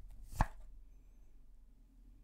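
A single sharp tap of a tarot card or deck against a wooden tabletop, about half a second in, during a card draw.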